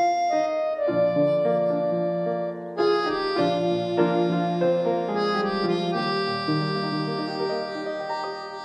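Instrumental keyboard music with held notes, a fuller, brighter layer joining about three seconds in.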